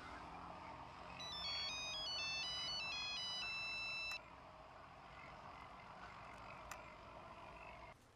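Mobile phone ringtone: a quick electronic melody of high, stepped notes that repeats after a short pause and stops suddenly about four seconds in, as the call is answered.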